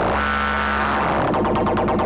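Eurorack modular synthesizer tone from a Make Noise DPO oscillator, a dense steady drone whose upper tones sweep in slow curves as a Make Noise MATHS function generator cycles as an LFO to modulate it.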